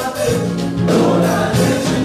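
Gospel choir singing with a male lead singer, over a live church band of keyboard and drums, with long held notes.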